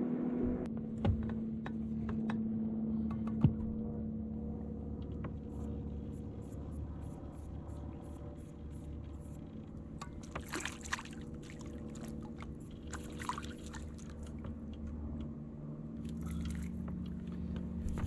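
Steady low hum of a boat's electric trolling motor at slow trolling speed, with a crappie splashing at the surface as it is reeled in, about ten seconds in and again a few seconds later.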